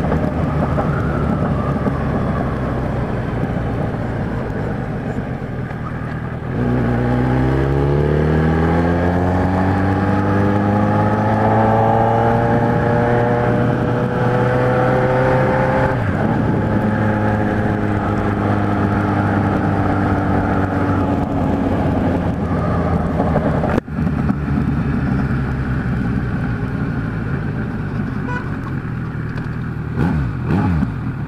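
Kawasaki Z1000 inline-four running through an aftermarket 4-into-1 exhaust with its baffle insert fitted, heard from the rider's seat on the move. After about six seconds the throttle opens and the engine note climbs steadily for several seconds and holds. Midway it drops suddenly as the throttle closes, then runs steady and eases off near the end.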